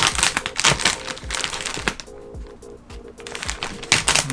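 Plastic packaging wrap crinkling as it is cut open and pulled, a run of sharp crinkles in the first two seconds that then eases off, over background music.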